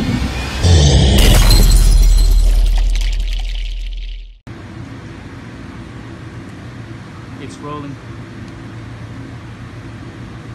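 Intro sound effect: a loud hit at about a second in, with a deep bass rumble that fades away over about three seconds and then cuts off. After the cut comes a steady low background hum with a faint, brief voice in it.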